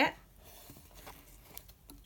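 Faint scattered ticks and rustles of twine being wrapped by hand around a cloth-bound book cover's spine.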